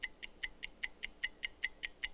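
Game-show countdown clock sound effect ticking evenly, about five sharp ticks a second, while the answer time runs out.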